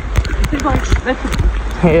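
Mostly speech: people talking outdoors, with a word near the end, over a steady low rumble.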